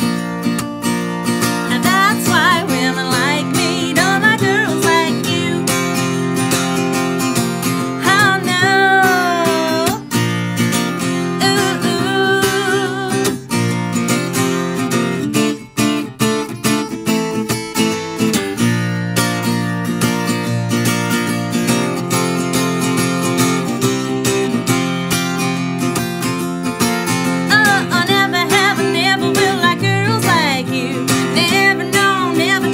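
Acoustic guitar strummed and picked steadily in a live country song, without a break.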